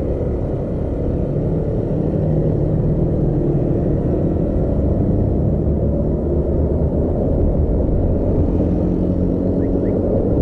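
Steady low rumble of a vehicle driving slowly through town traffic, engine and road noise together, with faint engine tones that climb a little as it picks up speed near the end.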